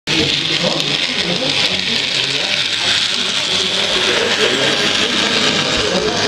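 Indistinct chatter of several people talking over a steady hiss, with a laugh about four and a half seconds in.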